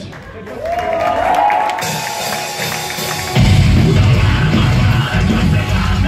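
A metalcore band opens a song live. A held note rises in pitch over crowd noise, then about three and a half seconds in the full band comes in loud, with heavy drums and low guitars.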